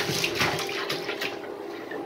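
Water splashing and swirling through a small model wall-hung toilet bowl as it is flushed, busiest at the start and easing off, over a faint steady hum.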